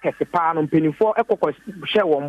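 Speech only: a man talking continuously over a telephone line, his voice thin and narrow, typical of phone audio.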